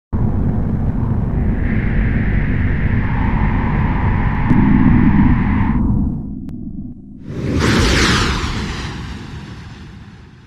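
Sound effects for an animated logo intro: a loud, low rumbling drone for about six seconds, then a sudden whooshing hit about seven seconds in that fades away slowly.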